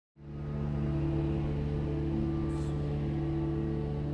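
A steady low drone of several held tones, fading in at the very start and holding level, with a brief faint high hiss about halfway through.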